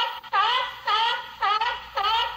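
A pitched sound effect or musical sting: a run of short tooting notes, about two a second, each swooping down and back up in pitch.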